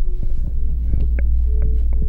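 A loud, low throbbing drone with a steady hum and sustained tones above it, a suspense film soundtrack. A few light clicks come through about a second in.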